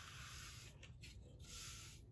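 Faint rubbing hiss of a pad edge painter drawn along the wet edge of a canvas, with a few brief breaks around the middle.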